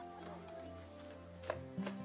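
Music between sung lines: sustained bass and keyboard-like tones, with sharp percussive clicks and hits coming in about one and a half seconds in.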